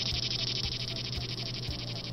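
Cicada buzzing: a steady, high-pitched buzz made of fast, even pulses.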